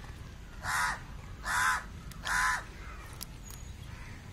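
A crow cawing three times, each caw harsh and short, a little under a second apart.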